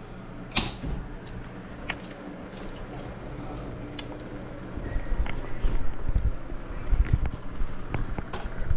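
Handling noises inside an air handler cabinet: a sharp click about half a second in and a few lighter ticks, then low knocks and rumble in the second half, all over a low steady hum. The blower motor is not running even though it is getting a call, because the control board is not passing voltage to it.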